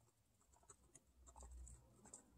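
Near silence with faint, scattered light clicks and rustles of dry hay as a guinea pig moves about on it.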